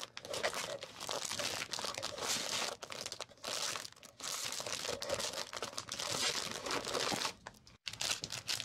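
Clear plastic sleeves and the vintage paper tickets inside them crinkling and rustling as they are flipped through by hand, in runs broken by short pauses, with a quieter lull near the end.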